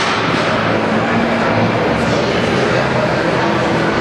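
Loud, steady crowd noise in a gym hall, many voices at once during a bench-press attempt.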